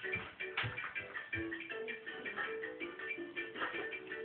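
A small electronic children's toy playing a simple tune of short beeping notes that step between a few pitches, over a light ticking rhythm, with a couple of soft knocks early on.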